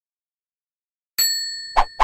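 Logo-intro sound effect: a bright metallic ding about a second in that rings on as it fades, followed by a short whoosh near the end.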